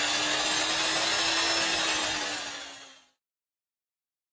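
A CNC router cutting wood: a steady whine from the spindle over the hiss of the cut, which fades out about three seconds in.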